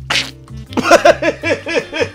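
A man coughs and splutters suddenly with a trick item in his mouth, a short breathy burst, and then a man laughs hard in rhythmic bursts of about four a second.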